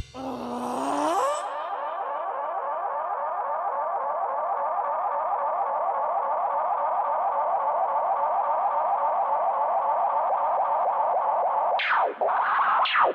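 Electronic synthesizer passage with echo: a tone glides upward over the first second, then settles into a fast, repeating up-and-down warble that holds steady, with a quick falling sweep near the end.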